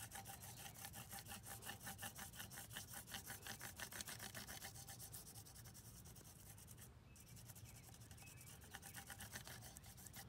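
Crayon rubbed quickly back and forth across paper to make a rubbing, a faint scratchy stroking at about six strokes a second that pauses about seven seconds in and resumes briefly near the end.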